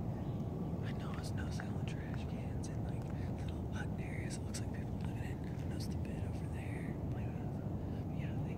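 Steady low rumbling noise on the microphone, with many short, high chirping sounds scattered over it.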